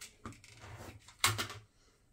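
Fabric scraps and a pair of scissors being handled on a cutting mat: soft rustling with a few light clicks, then one sharp clack a little after a second in.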